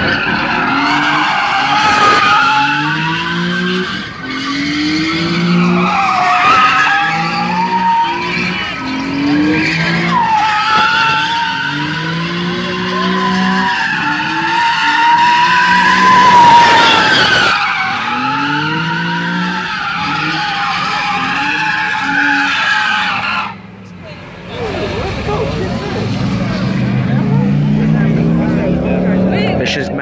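Tyres squealing continuously as an Infiniti G-series sedan spins donuts, its V6 engine revving up again and again about once a second. The squeal cuts off suddenly about three-quarters of the way through, leaving lower engine revs.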